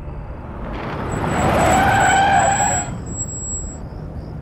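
A car drives up on a wet road, its rush swelling over about two seconds with a squeal on top, then dropping off sharply near three seconds in as it brakes to a stop.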